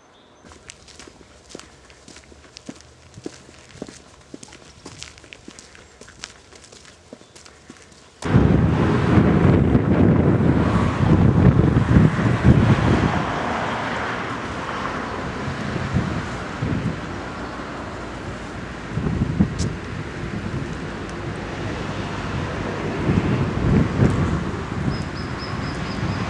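Light, irregular footsteps on a dirt path. About eight seconds in, loud wind noise on the microphone sets in suddenly and goes on in gusts.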